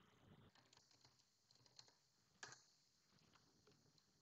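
Faint computer keyboard typing: a scatter of soft key clicks, with a slightly louder click about two and a half seconds in.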